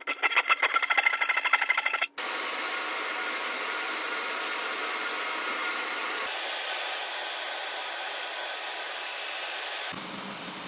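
A Japanese flush-cut pull saw cuts walnut in quick, even strokes for about two seconds. The sound then gives way to a steady machine noise from a router table, which shifts higher about six seconds in.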